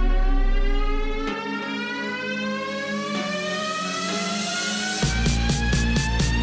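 Electronic background music: a long synth sweep rising steadily in pitch as a build-up, then a heavy bass and a steady beat drop in about five seconds in.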